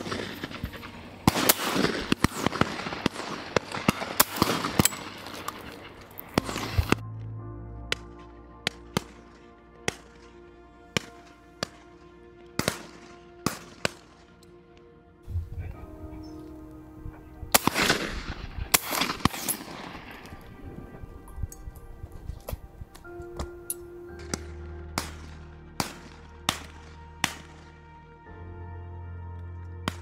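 Shotguns firing again and again at irregular intervals, with dense flurries of shots early on and again just past the middle. Background music with long held tones runs underneath.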